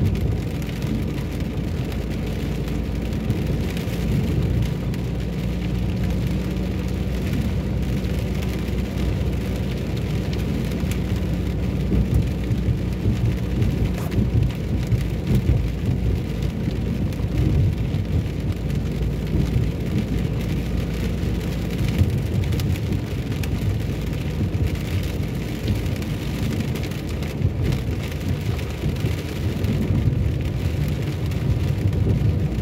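Rain on a moving car and tyres on a wet road, with a steady low rumble of engine and road noise, heard from inside the car.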